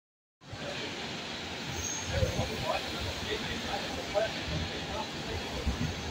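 Low rumble of an Alstom Metropolis series 300 subway train approaching through the tunnel, under a steady station noise with scattered voices of people waiting on the platform.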